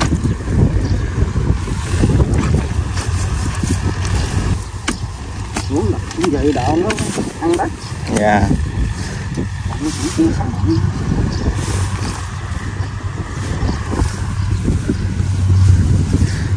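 A hand digging tool chopping and prying into packed earth in irregular knocks, over a steady low rumble of wind on the microphone.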